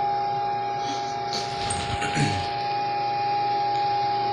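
A steady high-pitched hum, with a brief faint sound about two seconds in.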